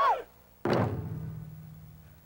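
Large taiko drums struck once together, a single heavy beat about half a second in that rings low and fades away over the next second and a half, the closing stroke of the piece.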